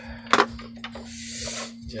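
Two sharp clicks in quick succession about a third of a second in, then scraping and rubbing as a power-supply circuit board is handled and set down on a workbench, over a steady electrical hum.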